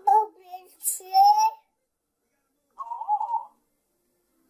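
A toddler babbling wordless baby talk into a phone, with gliding pitch and a drawn-out high note about a second in, then a pause and a short burst of babble near the end.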